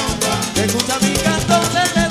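Cuban timba band playing live: a male voice sings over a driving bass line and steady Afro-Cuban percussion.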